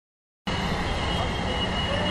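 City traffic noise, a steady street rumble that comes in suddenly about half a second in.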